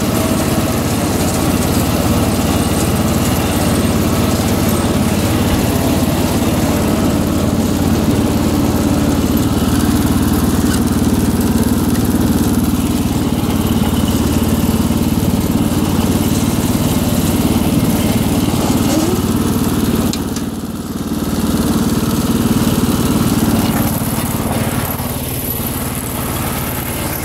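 1983 John Deere 214 garden tractor's single-cylinder Kohler engine running steadily and smoothly while the tractor is driven, with a brief dip in level about three-quarters of the way through.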